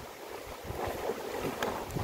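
Steady wind over a lake shore with small waves lapping, a faint even rush of noise.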